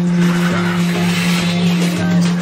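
A loud, steady, unchanging droning tone with a hiss over it.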